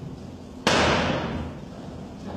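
A single sharp bang about two-thirds of a second in, its echo dying away over about a second.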